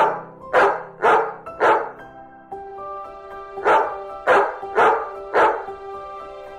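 A dog barking in two runs of four quick barks, about two barks a second, with a pause of about two seconds between the runs, over background music with sustained tones.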